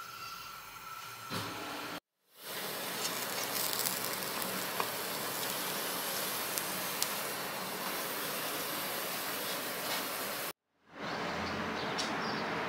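Steady outdoor background noise, an even hiss, cut off twice by short breaks to silence, with a few faint clicks.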